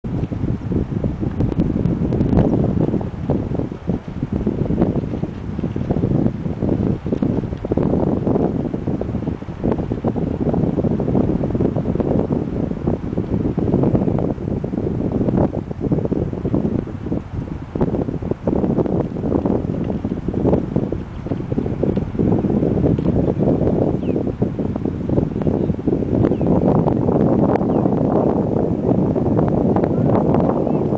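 Wind buffeting the microphone: a low, gusty rumble that keeps rising and falling, a little stronger near the end.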